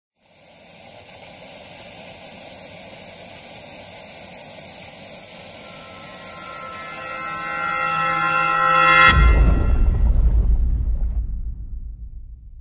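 Intro sound design for a logo: a steady hiss of TV static, with tones swelling in under it that cut off suddenly about nine seconds in, where a deep boom hits and rumbles away.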